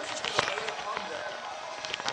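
Phone being set back on a wobbly tripod: rustling handling noise with a few small clicks, most of them in the first half second.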